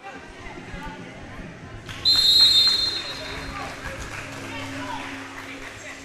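Referee's whistle, one shrill blast about two seconds in, marking the end of the first period, over steady chatter from a gym crowd.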